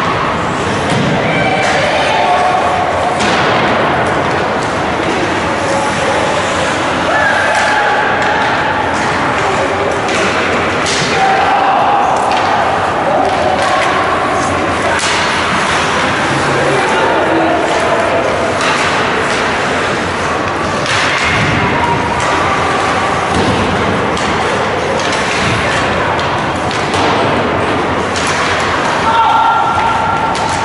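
Youth ice hockey game heard from the stands: scattered shouts from spectators, players and coaches, with repeated thuds and slams of the puck, sticks and bodies against the boards and glass.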